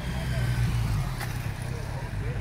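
City street ambience: a steady low rumble of traffic with indistinct voices of people nearby, and a single short click about a second in.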